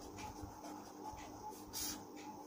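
Pen writing on paper: faint scratching strokes, with one louder, quicker stroke near the end as the word is underlined.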